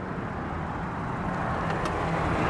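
Steady low hum under a haze of background noise, growing slightly louder near the end.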